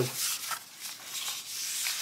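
Sheets of paper rubbing and rustling as loose printed instruction pages are slid together and gathered by hand on a cutting mat.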